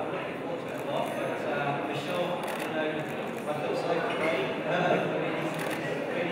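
Speech only: a man talking into a handheld microphone, his words indistinct.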